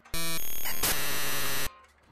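A comedic sound effect laid in by the editor: a steady buzzing tone for under a second, then a hiss of static, stopping abruptly.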